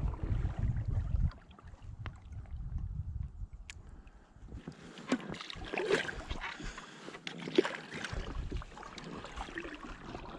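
Paddling a packraft on calm lake water with a carbon-shaft double-bladed paddle: the blades dip and splash, with water dripping off and light knocks of the paddle. A low rumble fills the first second or so.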